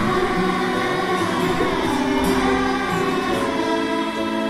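Children's choir singing together, holding long sustained notes.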